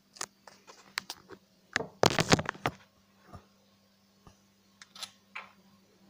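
A string of sharp clicks and knocks, densest and loudest about two seconds in with a few more around five seconds: handling noise as the phone filming the gold pan is moved and repositioned.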